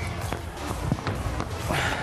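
A football knocking off players' heads and a table-tennis table during a head-tennis rally, several sharp knocks, with players' feet moving on the floor, over background music.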